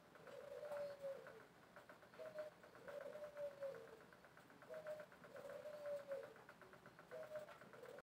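A dove cooing, faint: a repeated phrase of a short note followed by a longer note that falls in pitch, about every two and a half seconds.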